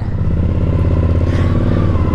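Suzuki V-Strom motorcycle engine running steadily at low revs as the bike pulls away slowly.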